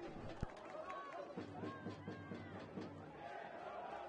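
Faint shouts and calls of players and a few spectators across a football pitch in a near-empty stadium, with a single sharp knock about half a second in.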